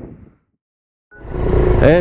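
Background music fades out, then about half a second of silence. Then the low running sound of a trail motorcycle and wind, heard from its handlebar-mounted camera, rises in, and a man's voice starts near the end.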